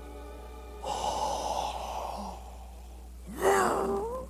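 A man acting out a crucified man's struggle to breathe: a long, raspy gasping breath about a second in, then near the end a short strained groan that rises in pitch.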